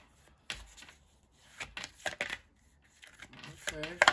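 A deck of tarot cards being shuffled by hand, an irregular run of short card clicks.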